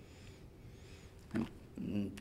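A quiet pause in a man's speech, broken about a second and a half in by one short, sharp breath close to a headset microphone, just before his voice resumes.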